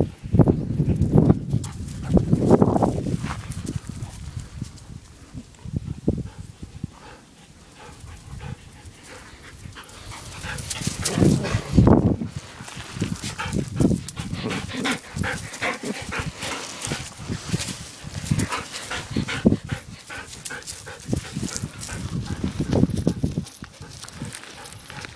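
Belgian Tervuren dogs close to the microphone, breathing and moving about. There are heavy low bumps in the first few seconds and again about halfway through, then a run of quick short sounds through the second half.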